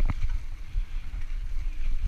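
Mountain bike rolling over a leaf-covered dirt trail: tyre noise and a few light rattles from the bike near the start, with wind rumbling steadily on the microphone.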